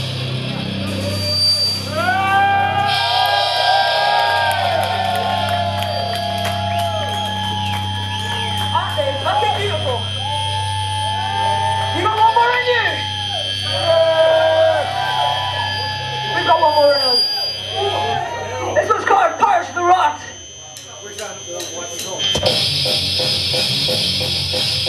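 Live metal band in a slow passage: electric guitar playing long held and bent notes over a low sustained drone, with a thin steady high whine. The full band, drums included, comes back in heavily about two seconds before the end.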